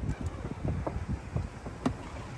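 Low, uneven wind rumble on the microphone with scattered soft knocks, and one sharp click near the end.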